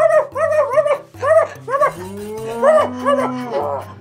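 A dog barking repeatedly in quick short barks, with one longer drawn-out call in the middle, over background music with a steady bass line.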